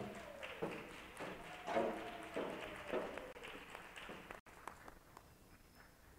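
Footsteps of one person walking across a stage, a few faint, evenly spaced steps echoing in a large, empty gymnasium. They die away after about four and a half seconds.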